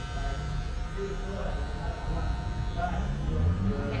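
Electric hair clippers running steadily as they trim hair at the side of the head and neck.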